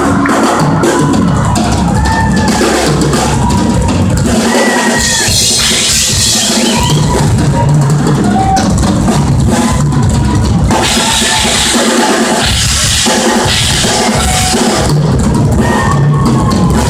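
Heavy metal band playing live: electric guitars and bass over a drum kit driven by heavy bass drum and snare.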